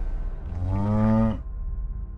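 A cow mooing once, a single drawn-out moo of about a second, over low background music.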